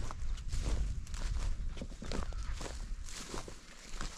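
Footsteps of a person walking through pasture grass, an uneven series of soft steps and swishes.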